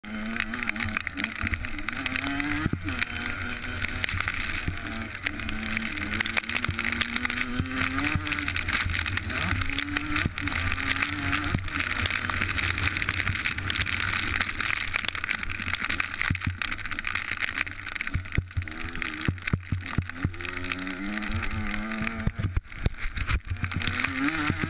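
Motocross dirt bike engine heard from a bike-mounted camera, revving up and dropping back repeatedly as the rider accelerates and shifts around the track, with wind rushing on the microphone. In the later part the engine sits lower and is broken by frequent knocks and rattles as the bike goes over rough ground.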